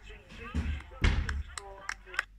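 Indistinct voices in the background, with two heavy, deep thuds about half a second and a second in, then a few sharp clicks.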